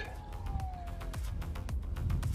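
The electric ducted fan of an E-flite F-15 Eagle RC jet winding down during landing: a single whine that falls in pitch over about a second and fades. Wind rumbles on the microphone under a fast crackle of clicks.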